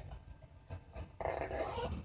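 Faint rustling of a fabric bag and folded paper being handled, then, a little past halfway, a brief high-pitched whine that holds its pitch.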